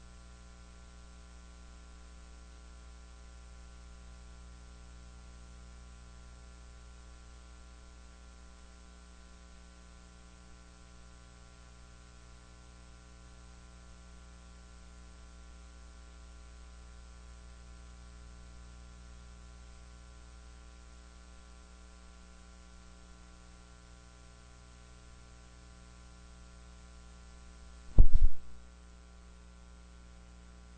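Steady electrical mains hum in the audio feed, a stack of even tones over a faint hiss, with no other sound. Near the end comes a single loud thump lasting about half a second.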